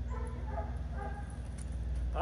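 A dog whining faintly in a few short whimpers, over a steady low background rumble.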